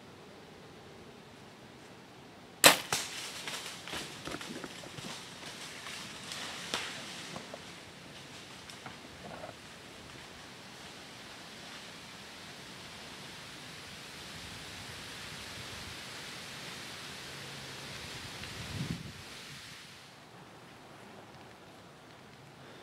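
A bow shot at a deer: one loud, sharp crack of the released string about three seconds in, followed for several seconds by the crackle of the hit buck crashing away through dry leaves, fading out. A steady hiss slowly builds after it.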